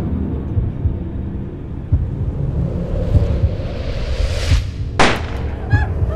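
Horror trailer sound design: a low rumbling drone with irregular deep thumps, then a rising whoosh that swells over a second or so and ends in a sharp hit about five seconds in.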